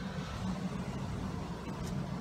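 Steady low rumble of outdoor background noise, with no speech.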